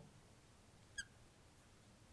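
Near silence, with one brief high squeak about a second in: a marker pen touching the glass of a lightboard as writing begins.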